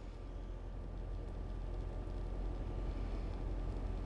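Steady low hum of room tone, growing slightly louder, with no distinct event; the oil being drizzled makes no audible sound.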